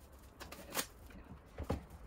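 Plastic cling wrap crinkling and rustling as it is pulled from its box and spread over a table, with a few brief crackles, the sharpest just under a second in.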